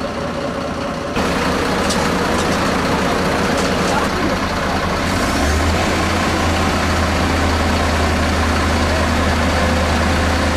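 Fire truck diesel engine running steadily, louder from about a second in, with a deeper steady hum joining about five seconds in.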